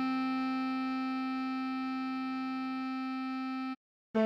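Synthesized instrument playback of a tutorial melody: one long held note slowly fading, with part of the sound dropping away about three seconds in. It cuts off to a brief silence near the end, just before the next note.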